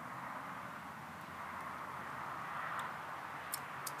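Steady, low outdoor background noise, an even hiss with no distinct events, and two or three faint clicks near the end.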